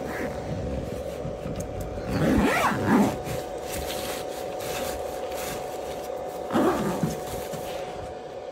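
A 1500 W power inverter running off a car battery gives a steady whine, its load a phone charger topping up a power bank. Two short louder sounds rise over it, about two seconds in and again near seven seconds.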